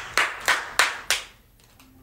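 A person clapping their hands: four quick sharp claps about a third of a second apart, stopping a little over a second in.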